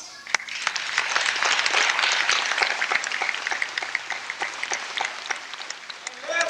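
Audience applauding: a mass of hand claps that starts just after a speaker stops, swells over the first couple of seconds and then thins out toward the end.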